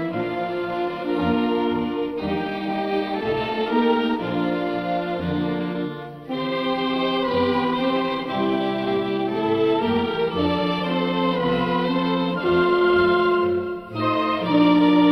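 Instrumental march music: held chords and melody notes over a steady bass beat, breaking off for a moment about six seconds in before carrying on.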